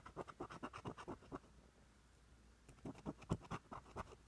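Scratch-off lottery ticket being scratched in quick short strokes, several a second, with a pause of about a second in the middle before a second run of strokes.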